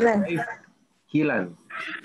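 Speech: a voice speaking in three short phrases with brief pauses between them, heard over a video call.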